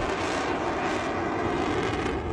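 A steady rushing drone, even in level.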